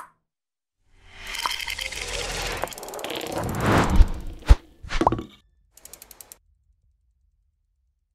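Logo-animation sound effects: a noisy swell that builds for about three seconds, two sharp hits about half a second apart, a third hit with a brief ringing tone, then a quick run of ticks.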